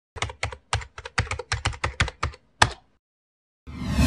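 Computer keyboard typing: about a dozen quick keystrokes, ending with one louder key press. After a short silence, a deep swelling whoosh starts near the end.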